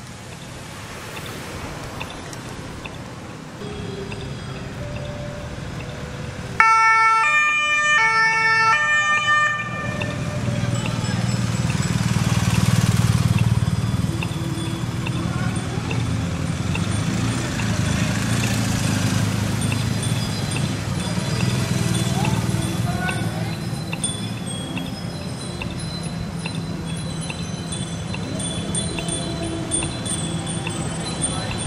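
A police two-tone siren sounds for about three seconds, starting suddenly and alternating between two pitches, then gives way to a steady low engine rumble of the escorting vehicles. Near the end, bicycle bells ring repeatedly.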